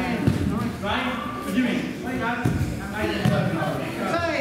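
Indistinct voices talking in a large, echoing hall, with a few dull thuds of judoka's bodies and feet on the judo mats.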